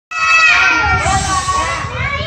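A large group of young children shouting together, bursting in suddenly out of silence and held for about two seconds.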